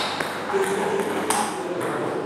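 Table tennis rally: a celluloid ball struck by rubber-faced bats and bouncing on the table, a few sharp clicks ringing in a large hall. One bat is faced with Spinlord Irbis II max rubber.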